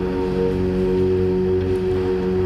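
Background music: a steady drone of several sustained tones, held without change.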